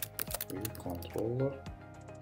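Computer keyboard being typed on: a string of quick, separate key clicks. About halfway through, a short murmur of a voice rises over the typing.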